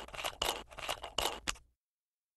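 Screw cap of a copper water bottle being twisted open: a quick run of short scraping, squeaky creaks from the metal threads, which stops abruptly about a second and a half in.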